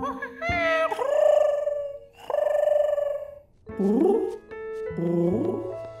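Cartoon animal calls: two long, bending vocal calls from the monkey, then two short rising coos from a pigeon, over gentle plucked background music.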